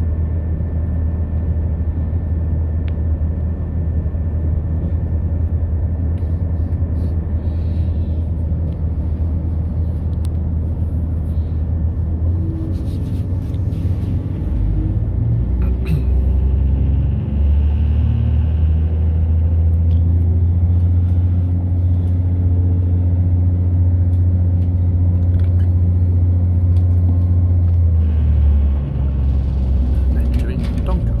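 Diesel multiple unit heard from inside the carriage while running: a steady low rumble of engine and wheels. From about twelve seconds in, engine notes come in and step up in pitch, then ease near the end.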